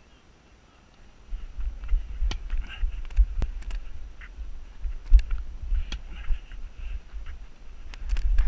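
Low, uneven rumbling on a head-mounted camera's microphone that starts about a second in, with four sharp knocks scattered through it.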